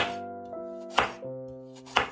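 Chef's knife slicing a raw carrot and knocking on a bamboo cutting board, one sharp chop about every second, over background music with held notes.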